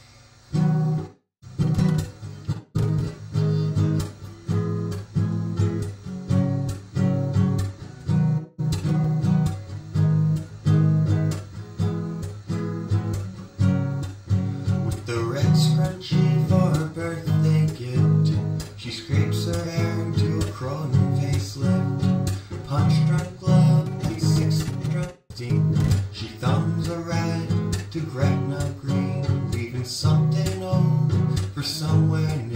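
Acoustic guitar strummed in a steady rhythm through the song's G, Em, C, D chord changes. A man's singing voice comes in over it about halfway through.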